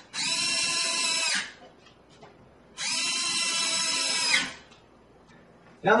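Cordless drill-driver driving screws into a door, running in two steady whining bursts of about a second and a half each with a short pause between.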